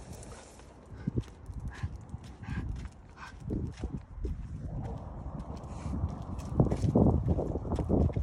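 A person and a dog walking on asphalt: irregular footsteps and scuffs, with knocks and rumbling from the handheld phone, growing louder near the end.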